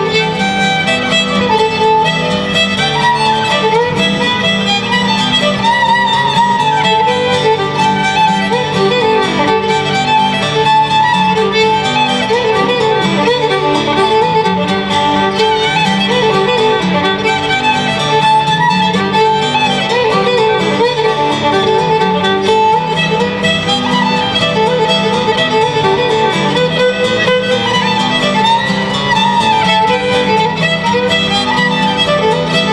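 Fiddle and acoustic guitar playing a fiddle tune together, the fiddle bowing a melody over the guitar's steady strummed rhythm and bass notes.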